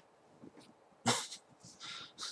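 A man's short, sharp breath through the nose or mouth about a second in, followed by a fainter breath near the end.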